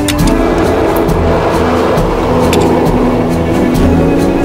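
Blizzard wind rushing and roaring, swelling in just after a sharp click at the start, over music with held notes.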